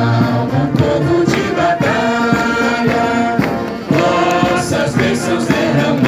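A religious hymn sung by many voices with instrumental accompaniment, in long held notes.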